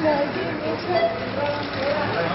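People talking, with no other sound standing out.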